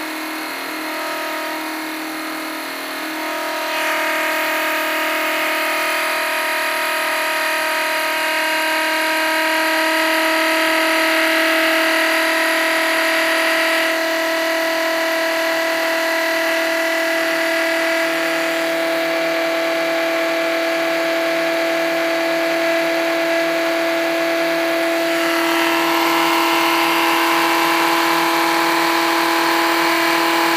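Home-built Rodin-coil pulse motor running on battery power, its magnet rotor spinning inside the copper-wound toroid and making a steady whine of several tones. The sound gets louder about four seconds in. The motor is driving the charge of its capacitors.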